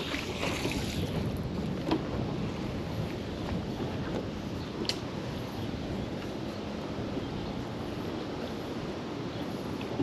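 A thrown magnet's splash into the water dying away right at the start, then steady wind on the microphone with the faint wash of water, broken by a couple of faint clicks as the rope is hauled in.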